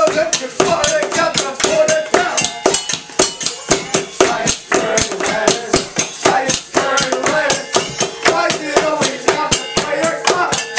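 Improvised kitchen percussion: wooden spoons beating a fast, steady rhythm on pots and a metal bowl, with voices singing over it.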